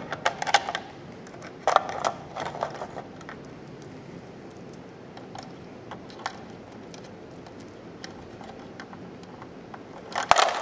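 Small plastic wrestling figures handled in a toy ring: scattered light clicks and taps, busiest in the first three seconds and sparser after.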